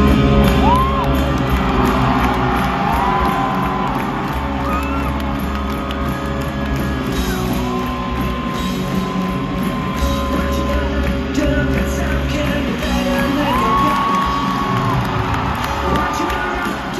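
Live rock band playing through a stadium PA, heard from the crowd: electric guitar, bass and drums, with several long held high notes that bend at their ends, and whoops from the crowd.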